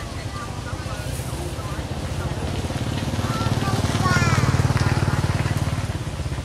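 A small engine running steadily with a fast, even low putter, growing louder about four seconds in. A few short high calls sound over it near the middle.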